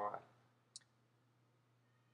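Near silence after a spoken word fades out, broken by one faint, very short click about three-quarters of a second in.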